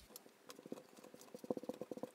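Faint quick taps and scratches of a marker pen writing on a whiteboard, coming thickest in the second half.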